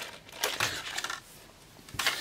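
A small clear plastic case holding Lego minifigure parts being handled: a few short plastic rustles in the first second or so, then a light tap at the very end as it is set down on the table.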